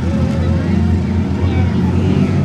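Several wingless sprint car engines running together in a pack on a dirt speedway: a steady, loud, low drone with no sharp revving or impacts.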